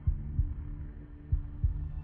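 Heartbeat sound effect: slow pairs of low, deep thumps, one pair about every second and a quarter, over a steady low hum. It is a suspense cue.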